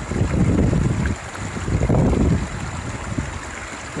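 River water rushing over rocks, with gusts of wind rumbling on the microphone. The noise is loudest in the first second and again around two seconds in.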